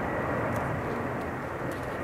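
Steady low rumble of outdoor background noise, with no ball strikes or voices.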